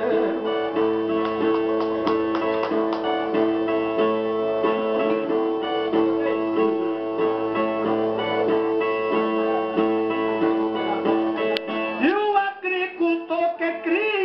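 Two Brazilian ten-string violas playing an instrumental interlude between sung stanzas, with strummed chords and notes that keep ringing steadily. About twelve seconds in, a man's singing voice comes in over the violas.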